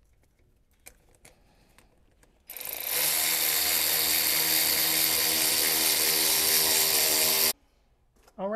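A handheld cordless power tool runs steadily for about five seconds, starting about two and a half seconds in and stopping suddenly. A few light clicks of handling come before it.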